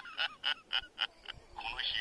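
A man's dubbed character voice laughing in a run of short "ha" bursts, about four a second, before speech begins again near the end.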